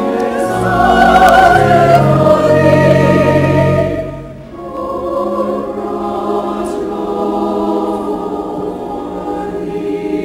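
Church choir singing, loud and full at first, then falling away briefly about four seconds in and going on more softly.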